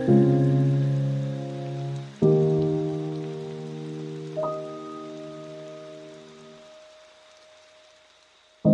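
Solo piano playing slow, sustained chords: one struck at the start, another about two seconds in, and a single high note added about four seconds in, all ringing out and fading almost to silence by the end. A faint steady hiss lies under it throughout.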